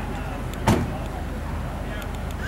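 A single loud knock about three-quarters of a second in, over a steady low rumble.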